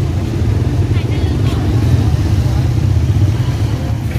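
A small vehicle engine running steadily at idle close by: a constant low rumble with a fine, even pulse. A faint voice is heard briefly about a second in.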